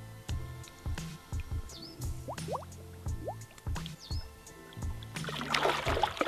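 Background music with held notes, bass and a regular beat. Near the end, water splashing as a large mirror carp is released and swims off.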